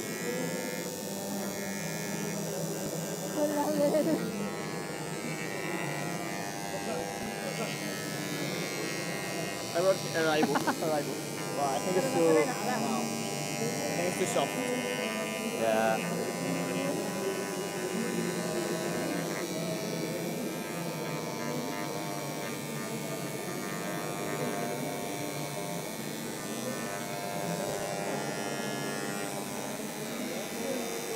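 Handheld electric engraving pen buzzing steadily as its tip cuts into an acrylic plate; the engraver runs straight off the mains at 50 hertz, so moving it too fast makes it skip. People talk in the room, most around the middle.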